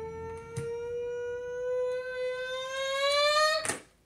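A woman's voice holding one long vocal note that slowly rises in pitch for about four seconds, then breaks off suddenly with a short noisy burst near the end. Faint clicks of tarot cards being handled sit underneath.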